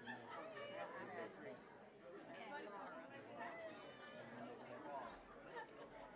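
Faint chatter of a congregation gathered in a large room, many voices talking at once with no single voice standing out.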